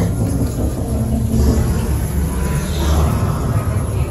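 A loud, steady low rumble, with faint voices in the background.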